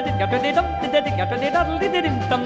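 Swedish polka song recording: an oom-pah bass alternating between two low notes about four times a second, with a long note held steady over it.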